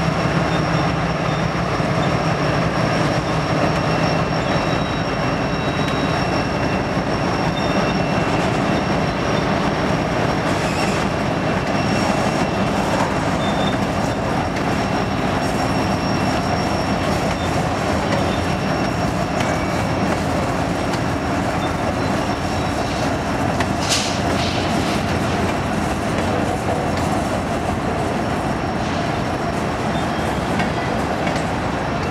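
Freight cars of a Union Pacific manifest train rolling past on steel wheels: a steady loud rumble with faint high wheel squeal and light clicking over the rail joints. The lead locomotive's engine hum fades in the first few seconds, and there is one sharper clank late on.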